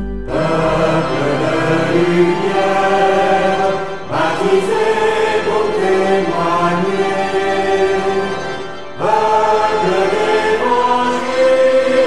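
Choir singing a French Catholic hymn in three phrases, each starting afresh about four and nine seconds in.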